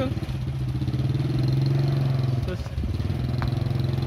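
A Honda Supra Fit's small single-cylinder four-stroke engine, fitted to a homemade reverse trike, running steadily at low speed as the trike rolls along. It is a little louder in the middle.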